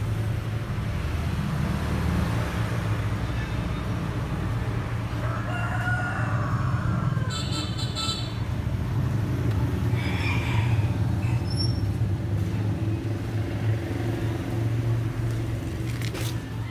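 A rooster crowing twice, a few seconds apart around the middle, over a steady low hum.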